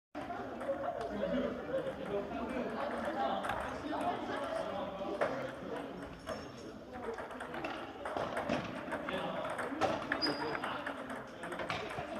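Table tennis balls clicking irregularly off paddles and tables, from several rallies at once, over a background of many people's voices.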